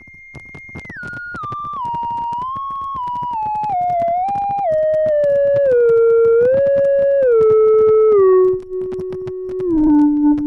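Software modular synthesizer, a Vult Basal oscillator waveshaped through a ZZC FN-3, playing a clear theremin-like tone that steps down from high to low in pitch, gliding briefly between each note. It grows louder over the first couple of seconds, over a constant crackle of static clicks.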